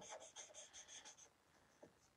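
Faint scratching of a Stampin' Blends alcohol marker tip colouring on paper in quick short strokes, fading out after about a second. The light blend is being rubbed over the dark outline to blend the alcohol inks.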